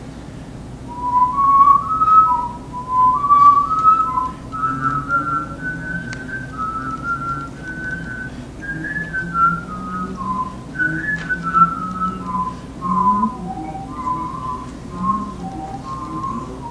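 A man whistling a simple stepwise melody. About four to five seconds in, a lower line of notes enters underneath, forming a canon: the lower part repeats the same melody a few seconds behind the whistled one.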